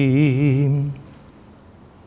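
A man chanting in the style of Armenian church liturgy, holding one long note with a wide, even vibrato. The note stops about a second in, leaving only quiet room sound.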